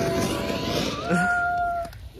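Ground fountain firework hissing as it sprays sparks, with a high steady tone held for about a second in the second half.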